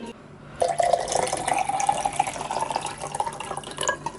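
Liquid being poured into a drinking glass in a steady stream for about three seconds, starting about half a second in and stopping just before the end. Its pitch rises slightly as the glass fills.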